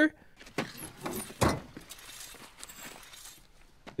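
A few quiet knocks and one louder thump about one and a half seconds in, over faint outdoor background noise, from a TV drama's soundtrack.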